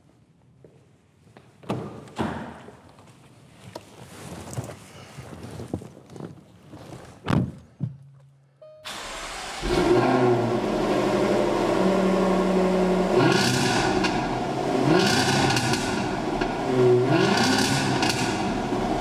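A few faint thumps and clicks, then about halfway through the warmed-up 2013 Jaguar XFR-S's supercharged 5.0-litre V8 comes in loud and runs, with three quick throttle blips that rise and fall in pitch.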